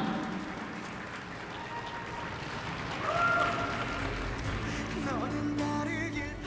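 Arena crowd applause dying away, then music begins about three seconds in with long held notes, a low bass joining about a second later.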